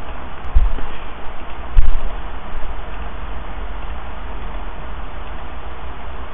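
Steady microphone hiss with two short low thumps, about half a second and two seconds in.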